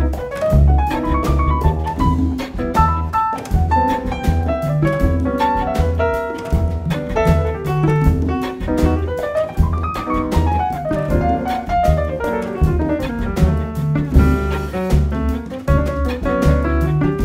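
Chamber-jazz ensemble playing: a grand piano running quickly up and down in flowing lines over a repeated low bass figure, with strings and drums keeping a steady rhythm.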